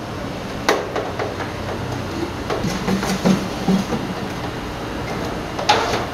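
Electric air fryer switched on and running with a steady fan whir, with knocks as it is handled on a wooden board: one sharp knock under a second in and another near the end.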